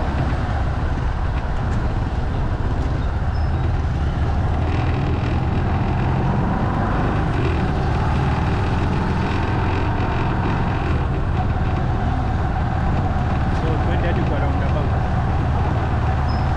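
Motorcycle running steadily at riding speed, a constant low engine hum with wind and road noise on the bike-mounted camera's microphone.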